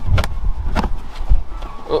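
Handling noise with a low rumble and about four short knocks and clicks as a plastic trim fastener is pressed and screwed into a car's carpeted boot-floor panel.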